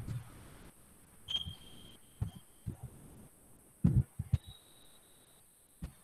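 Quiet room tone broken by about six short, low thumps at irregular moments, the loudest about four seconds in, with a faint thin high whine heard twice.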